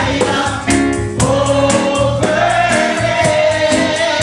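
Church congregation singing a gospel song together over a band, with bass and a steady beat underneath.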